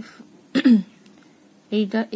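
A woman clears her throat once, briefly, about half a second in, with speech just before and again near the end.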